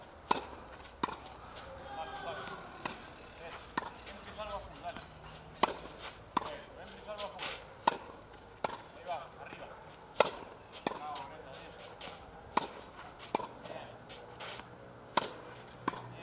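Tennis balls being struck with a racket on a clay court during practice. The sharp string-on-ball cracks and the softer ball bounces come every half-second to second, irregularly spaced. The loudest hits fall near the middle and near the end.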